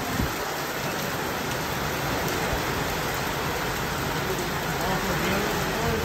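Heavy rain pouring down steadily, heard from under a corrugated roof.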